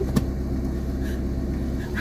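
Steady low drone of a van's engine and road noise heard from inside the cabin while driving, with a short click just after the start.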